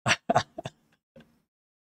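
A man's brief chuckle: a few quick bursts of laughter in the first second, then a faint last one.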